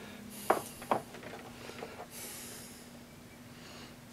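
Two light clicks as small steel boring bars are handled in and out of a plastic kit case, followed by a nasal breath, over a faint steady hum.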